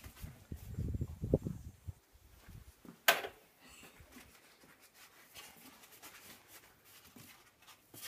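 A low rumbling noise in the first two seconds, then a single sharp bang about three seconds in with a short echo after it.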